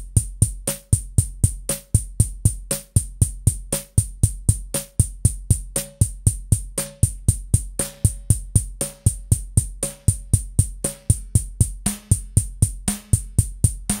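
A programmed motorik drum-machine beat loops from Reason's Redrum sequencer, playing Kong's drum sounds: an even pulse of bass drum and hi-hat at about four hits a second, with a short pitched snare about once a second. The snare is Kong's physical-modelling snare run through a ring modulator, and its tone shifts near the end as its knobs are turned.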